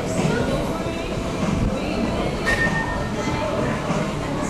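Music and people's voices in the background over a steady low rumble, with a brief sharp sound and a short high tone about two and a half seconds in.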